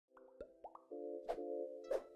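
Electronic intro jingle with sound effects: a few quick rising bloops, then a held synth chord with two sharp pops over it.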